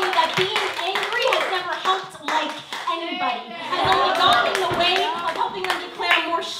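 Audience clapping and cheering in reaction to a line of a spoken-word poem, with scattered claps and voices calling out over it.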